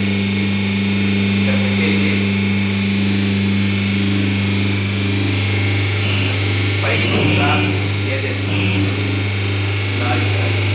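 Paper plate making machine running with a steady electric hum. Its higher hum note drops away about six seconds in, and a single knock comes about a second later as the press is worked.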